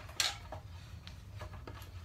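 A wooden walking stick being set into the jaws of a Jawhorse portable vise and clamped: one sharp knock about a quarter second in, then a few light clicks, over a low steady hum.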